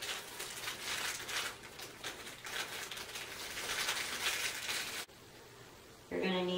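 Crinkling and rustling of packaging as bookcase hardware is unpacked by hand, going on for about five seconds and cutting off abruptly.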